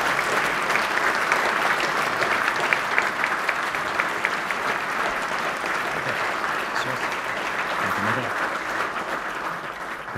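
Hall audience applauding steadily, the clapping easing a little near the end.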